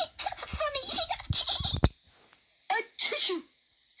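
A storyteller's giggly speech, then about three seconds in a performed cartoon sneeze: a short 'ah' and then a loud 'choo'.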